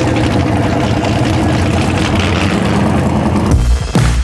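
Steady rumble of vehicle engines running in a drag-strip pit area. About three and a half seconds in it is replaced by loud electronic outro music with heavy bass beats.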